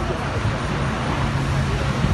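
Road traffic with a steady low engine hum, under indistinct talking from the crowd.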